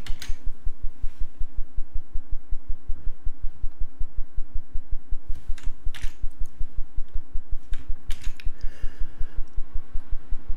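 A few sharp computer keyboard and mouse clicks, several close together in the second half, over a fast, even low pulsing that runs throughout.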